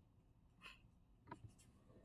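Near silence (room tone), with two faint short clicks about half a second apart, most likely from a computer mouse picking a colour.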